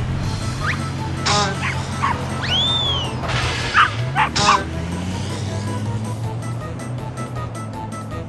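Cartoon background music with a steady bass line, over which a cartoon dog gives several short yips and barks between about one and five seconds in. A whistling sound effect rises and falls about two and a half seconds in.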